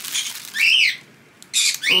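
A plush dog toy's squeaker squeezed once, giving a single short squeak that rises and falls in pitch, with a little rustling of the toy being handled before it.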